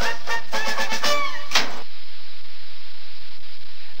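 A short burst of TV-sketch music with a sharp hit near its end, cut off abruptly about two seconds in and followed by faint steady hiss.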